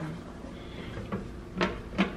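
Kitchen clatter: a few short, sharp knocks, like a cupboard door or utensils being handled, about a second in and near the end, over a faint steady low hum.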